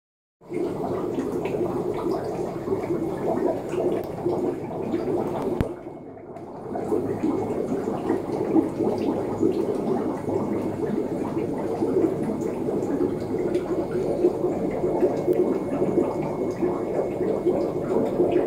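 Steady bubbling and gurgling of aquarium water, with a brief dip and a single click about six seconds in.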